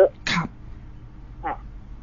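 A person clears their throat once, a short rough burst about a quarter second in.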